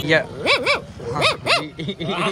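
A man imitating a dog's barking with his voice: four short yelping barks in two quick pairs.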